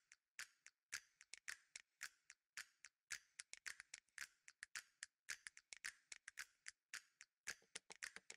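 Faint, rapid, dry clicks and ticks, several a second in a loose, uneven rhythm, high and crisp with nothing lower beneath them.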